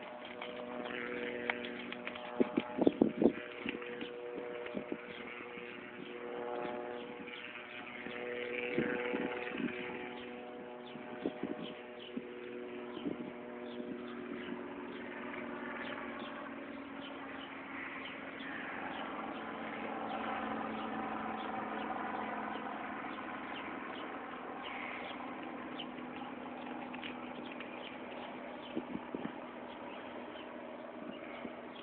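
A steady engine-like hum that shifts in pitch about halfway through, with a burst of sharp knocks about three seconds in and a few scattered clicks later.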